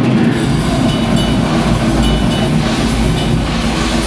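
Metal band playing live at full volume: heavily distorted guitars and drums in a dense, continuous wall of sound, the bass dropping out for a moment right at the start.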